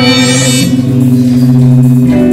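Live electronic music: a low chord held steadily, with a bright high shimmer fading out within the first second.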